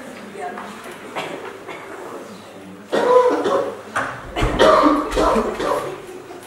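Low murmur of voices in a hall, then louder bursts of voice and coughing about three seconds in and again from about four seconds in.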